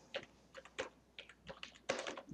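Typing on a computer keyboard: about ten faint, quick, irregularly spaced keystrokes as a word is typed.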